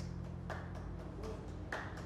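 A handful of sharp, irregular clicks and taps over a low steady room rumble, the two loudest about half a second in and near the end, just after the last notes of a nylon-string guitar have died away.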